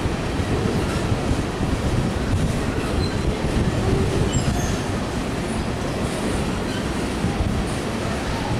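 Empty coal cars of a freight train rolling past, a steady rumble of wheels on the rails, with a few faint, brief high squeals from the wheels near the middle.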